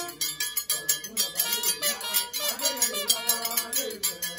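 Music with a fast, steady percussion beat and a sliding melody line.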